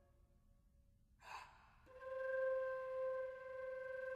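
Flute: near silence at first, then a short breathy rush of air a little over a second in, followed by a soft, steady held note.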